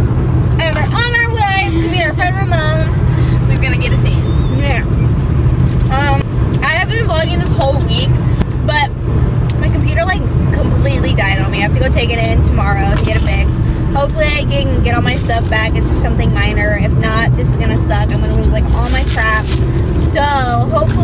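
A woman talking inside a car, over the steady low rumble of the car.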